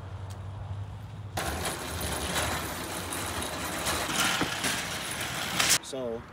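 A line of nested metal shopping carts pushed across an asphalt parking lot, rattling continuously from about a second and a half in until it stops suddenly near the end.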